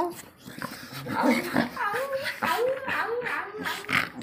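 Pit bull making a string of short, rising-and-falling whines while it plays on its back, mouthing a person's hand.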